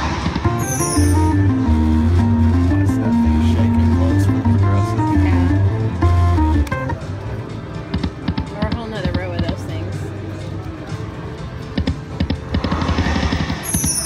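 5 Treasures video slot machine playing its free-spin bonus music: a stepped electronic melody over deep, regular bass notes that stops about halfway, giving way to clicking and chiming game sounds before the music starts again near the end.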